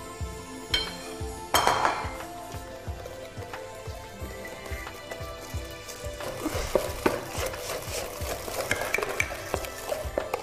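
Stirring and scraping in a stainless steel mixing bowl, with clinks against the bowl, as flour is worked into creamed butter, sugar and egg white until it becomes a paste. The stirring gets busier in the second half. Background music with a steady beat plays throughout.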